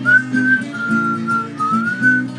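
A man whistling a melody over his own strummed acoustic guitar. The whistled line is a single clear tone that holds notes and slides up into them at the start and near the end, above steady chord strums.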